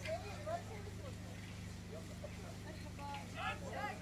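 Faint, indistinct talking of several people over a steady low hum.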